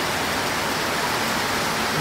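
Heavy rain pouring down steadily onto a wet road and pavement, an even hiss.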